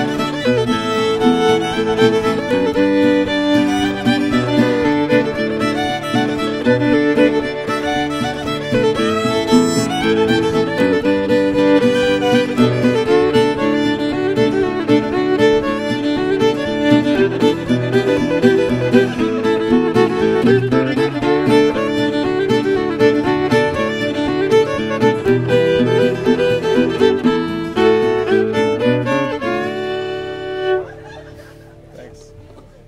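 Old-time fiddle tune in the key of D played on fiddle, with acoustic guitar backing.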